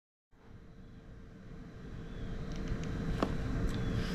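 Outdoor background noise fading in from silence: a low rumble with a faint steady hum, growing louder, and a few light clicks about three seconds in.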